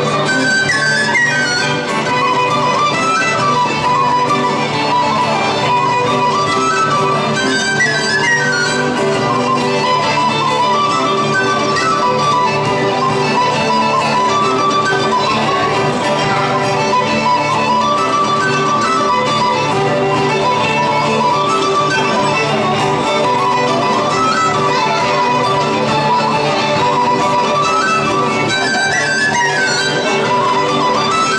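Irish traditional tune played live by a fiddle and tin whistle carrying the melody over acoustic guitar accompaniment, at a steady, lively level throughout.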